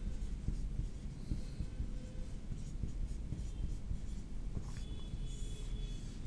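Marker pen writing on a whiteboard: faint scratching strokes, with a few short squeaks near the end, over a low steady hum.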